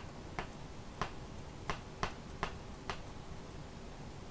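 Six short, sharp clicks at uneven intervals, roughly half a second apart.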